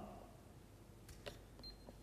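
Near silence, broken by a faint click about a second in, as a 30 mA RCD trips under a test current from an RCD tester, and a short high beep near the end.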